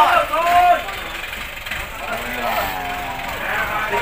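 People talking in short stretches, with a steady low background noise underneath.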